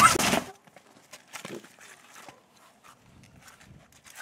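A brief bit of voice in the first half second, then near silence with a few faint, scattered clicks.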